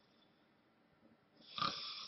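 Near silence, then about a second and a half in a short, breathy rush of air from a man, such as a sharp breath or sigh.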